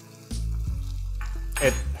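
Pasta and peas in thick tomato sauce cooking in a nonstick pan over medium heat, sizzling, with most of its liquid already cooked into the pasta.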